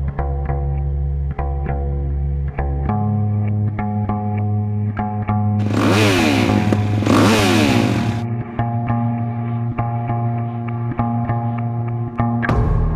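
Background music with a steady beat. About six seconds in, a dirt bike engine cuts in over the music for roughly two and a half seconds, revving in two bursts with its pitch swinging up and down.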